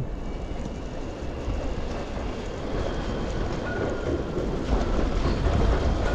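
Tram approaching and passing close alongside, growing louder in the second half as it draws level, over a low wind rumble on the microphone of a moving bicycle.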